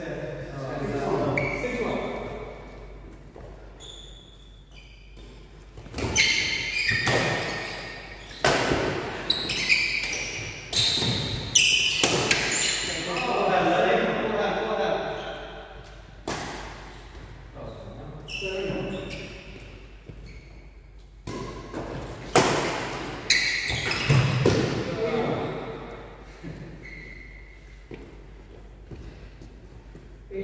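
A badminton rally in a large hall: sharp racket strikes on the shuttlecock and thuds of footfalls on the wooden court, coming in quick runs with short gaps between. The strikes echo in the hall.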